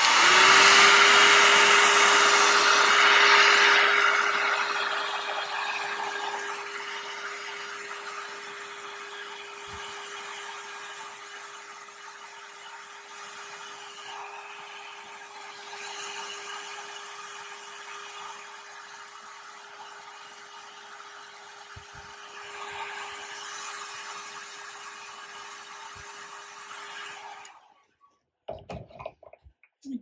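Vidal Sassoon hot-air curling dryer running: a steady motor hum under a rush of blown air, louder for the first few seconds, then switched off near the end.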